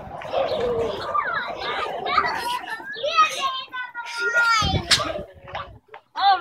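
Young children's voices chattering and calling out over one another, with a brief thump about five seconds in.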